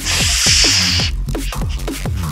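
Background electronic music with deep bass and repeated falling-pitch bass hits. A loud burst of hissing noise runs through about the first second.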